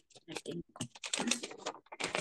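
Typing on a computer keyboard picked up by a video-call microphone, coming in short, irregular bursts that cut in and out.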